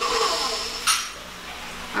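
A metal stand mixer and its stainless steel bowl being handled, with a sharp clink about a second in.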